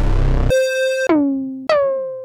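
Dry analog synthesizer one-shots played one after another. A short burst of noise comes first, then a bright held note that slides down in pitch about a second in, and another note near the end that swoops down into its pitch.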